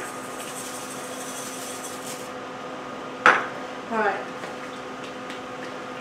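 Dry instant rice pouring from a measuring cup into a pot of simmering chili with a soft hiss, then the cup knocked once sharply against the pot's rim just past three seconds in. A faint steady hum runs underneath.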